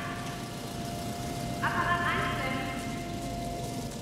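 Factory-floor machinery in an acrylic-sheet plant: a steady low rumble with a thin, constant high hum over it, the hum dropping out just before the end.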